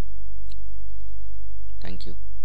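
Steady low electrical hum on the recording. A faint click comes about half a second in, and a short, louder clicking sound near the end.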